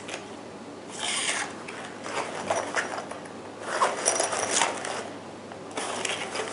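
Rustling and scraping as a first aid kit's fabric pouch and its attached packaging card are handled and turned over, in a few short bursts.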